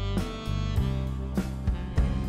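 Live band playing instrumental music: guitar over sustained bass notes, with drum kit hits.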